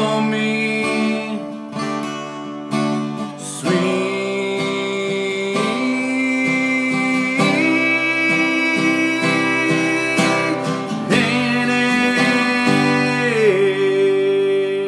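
A man singing long held notes, with slides in pitch, over a strummed acoustic guitar.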